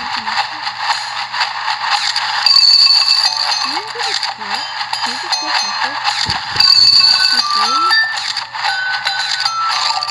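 Soundtrack of a Fruity Pebbles cereal TV commercial: a bright, busy mix of chiming tones and noise with a voice beneath it, cutting off abruptly as the ad ends.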